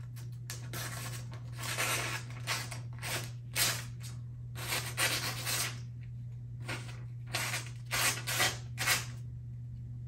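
Spyderco Manix 2 Lightweight's Maxamet blade slicing through a sheet of paper in a sharpness test: about a dozen short rasping cuts in quick succession, over a steady low hum.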